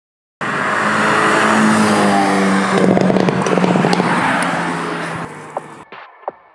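A Hyundai N performance car's engine revving hard under acceleration, its pitch rising. A rapid run of exhaust crackles follows about halfway through, and the sound falls away near the end.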